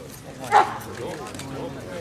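A dog barks once, short and loud, about half a second in, over background chatter of people.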